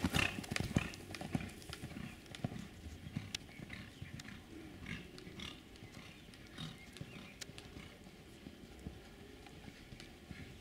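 A horse's hoofbeats on a sand arena, loud and close in the first second, then fainter and irregular as the horse moves off and circles the barrels.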